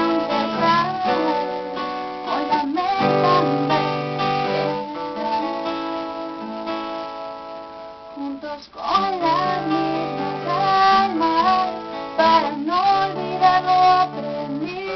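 Acoustic guitar strummed and picked in a slow song, its chords ringing. The playing drops away briefly a little past halfway and comes back with a woman's voice singing over it.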